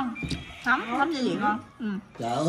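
Voices of people talking, with rising and falling pitch and no clear words, dropping away briefly near the end.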